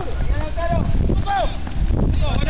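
Footballers and onlookers shouting, over a heavy low rumble of wind buffeting the microphone.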